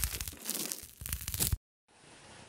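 Crackly, crunchy scraping of a plastic comb raking dry skin flakes off the nape of the neck, an ASMR sound effect full of small crackles. It stops abruptly about one and a half seconds in.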